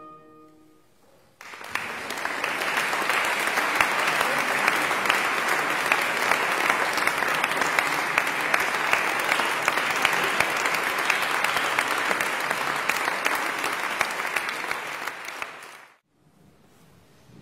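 The last note of a baroque oboe piece dies away in the hall's reverberation. About a second and a half in, an audience breaks into steady applause, which fades out quickly near the end.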